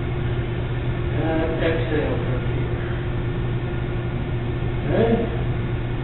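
Steady low electrical or mechanical room hum. Brief faint voice sounds come about a second and a half in and again near the end.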